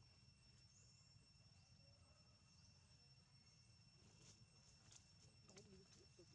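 Near silence: faint forest ambience with a steady high-pitched insect drone and a few faint clicks near the end.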